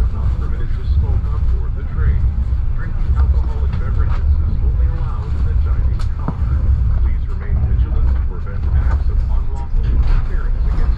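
Passenger train running at speed, heard from inside the coach: a steady low rumble of wheels and running gear on the track, with a single sharp click about six seconds in.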